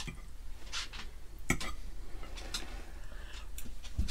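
Metal fork clinking and scraping against a ceramic plate of pasta, a handful of short sharp clicks spread over a few seconds.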